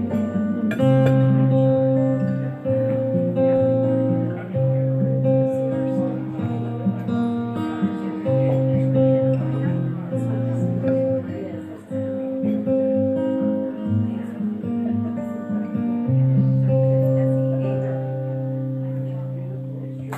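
Acoustic guitar playing an instrumental passage of strummed chords, moving from chord to chord every second or so, ending on a long held chord that slowly fades.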